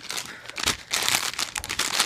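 Crinkly packaging handled in quick, irregular rustles: a plastic-wrapped battery pack and a Cracker Jack snack bag being moved about.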